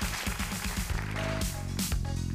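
Studio audience applauding over upbeat stage music with a steady bass beat. The applause dies away past halfway and the music carries on.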